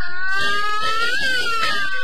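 Chinese opera band playing an instrumental passage: a melody instrument holds one long high note that bends gently in pitch, over rapid clattering percussion.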